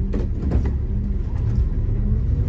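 Diesel engine of an MCI MC5B coach running under way, a steady low rumble heard from the driver's seat, with a couple of light knocks or rattles in the first second.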